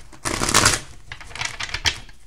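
A deck of tarot cards being shuffled by hand: a burst of rustling, then a run of quick card clicks near the end.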